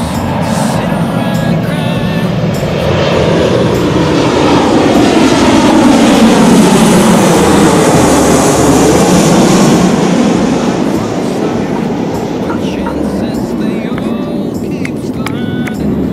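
Twin-engine jet airliner on landing approach passing low overhead: the engine roar builds, peaks near the middle as the plane passes, its pitch falls, then it fades.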